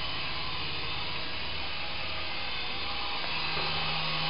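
Syma S107G micro RC helicopter in flight: its small electric motors and coaxial rotors whirring steadily, the pitch stepping up slightly about three seconds in.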